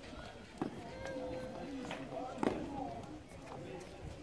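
Tennis racket striking an orange low-compression ball twice, about two seconds apart, the second hit the louder, as in a rally on a clay court. People talk in the background throughout.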